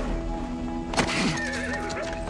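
Sustained dramatic trailer music, with a horse whinnying about a second in, its call starting suddenly and sliding down in pitch.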